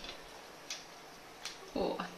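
Shell of a large cooked prawn cracking as it is peeled by hand: two small sharp clicks less than a second apart. A short voice sound comes near the end.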